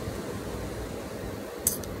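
Steady outdoor background noise, with wind rumbling low on the microphone on a windy day. A brief high hiss comes near the end.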